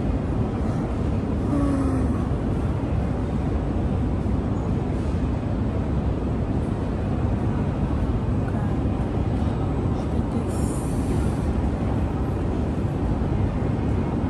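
Steady low rumble of a large airport terminal hall's background noise, with faint distant voices mixed in.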